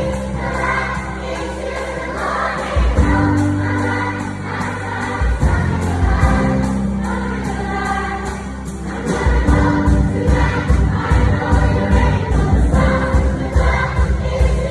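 A large girls' choir singing over an instrumental accompaniment with a strong bass line. From about nine seconds in, the bass turns into a quick, pulsing beat under the voices.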